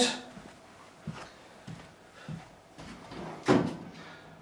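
Faint knocks and handling noises of tools on a workbench, with one louder brief clatter about three and a half seconds in.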